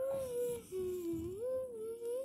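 A young girl humming a wandering tune, one held note that dips lower about halfway through and rises back up, over soft low bumps.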